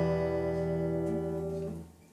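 A strummed open chord on a Yamaha steel-string acoustic guitar ringing out and slowly fading, then cut off just before the end.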